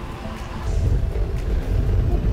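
Wind rumbling on the camera's microphone as a road bike rolls along, swelling about half a second in, with faint music underneath.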